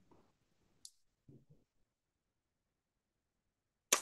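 Near silence on a video-call line, broken only by a faint short hiss about a second in and a click at the very end as a voice comes in.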